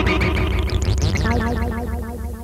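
Moog modular synthesizer: a held chord breaks into a flurry of rapid warbling pitch sweeps, then settles into a quick repeating figure of about six pulses a second, which begins to fade near the end.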